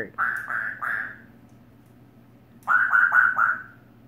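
African grey parrot giving a run of short, repeated calls: three in quick succession, a pause of over a second, then four more.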